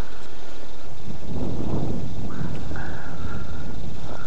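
Wind buffeting the microphone, a rumbling noise that thickens about a second in, with a thin insect buzz coming and going in the second half.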